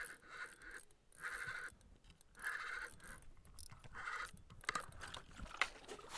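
Ice-fishing reel being cranked in short whirring bursts about a second apart as a hooked burbot is reeled up, with a few clicks near the end.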